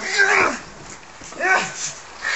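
Two short, high-pitched yells, one at the start and one about a second and a half later, each rising and then falling in pitch: fighting shouts from a staged fight.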